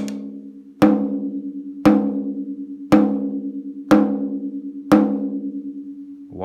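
A tom drum struck six times near its edge with a wooden drumstick, single hits about a second apart. Each hit rings on with a cluster of steady pitches around its lug pitch of about 209 Hz, and the higher overtones in the ring are strong enough to throw off a clip-on drum tuner's reading.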